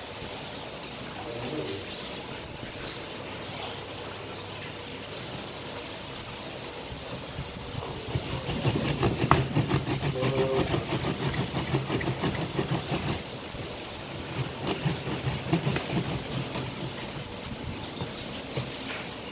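A green plastic hand citrus juicer being worked over a lime: the lid is pressed and twisted down onto the ridged reamer, and the plastic grinds and clicks in quick rapid strokes. This happens for several seconds about halfway through and again briefly later, over a steady hiss.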